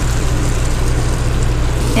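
Onions and tomatoes sizzling in an electric skillet as a spatula stirs them, over a steady low hum.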